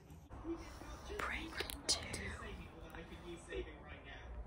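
Faint whispered speech, low and breathy, with no other distinct sound.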